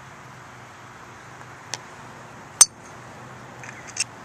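A golf driver's clubhead striking a teed ball once, a sharp click with a brief high ring, about two and a half seconds in. A much fainter tick comes about a second earlier.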